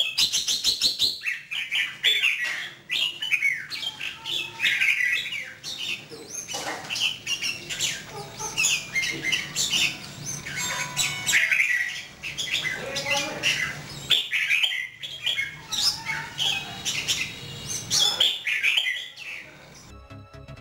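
Red-whiskered bulbul singing and calling in short, quick phrases of chirps and whistles, with brief pauses between the bursts.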